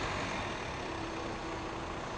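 Car engine running steadily as the car rolls slowly forward.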